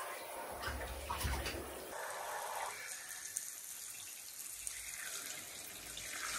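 Water spraying from a handheld shower head onto wet clothes in a bathtub, a continuous rush of water. There are a few low thuds in the first two seconds, and the sound changes character about two seconds in.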